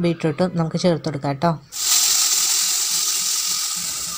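Sizzling in a hot pan as grated carrot and beetroot are tipped in from a pressure cooker; the hiss starts suddenly a little before halfway and eases slightly.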